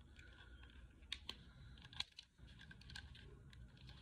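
Faint, scattered clicks and scrapes of a brow pencil's packaging being worked open by hand, over near-silent room tone, with the sharpest click about two seconds in.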